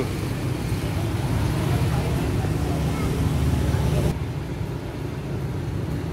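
Motor scooters passing close by with a steady engine rumble and road noise; the higher hiss thins out about four seconds in.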